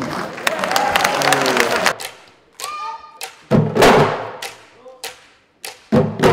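Audience clapping for about two seconds, then separate drum strokes with short ringing tails, with loud low hits around the middle and again near the end.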